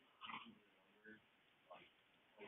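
Near silence: room tone with a faint, distant voice twice, briefly.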